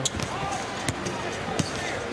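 Basketball bouncing on a hardwood court: a few sharp, separate bounces over the arena's background murmur.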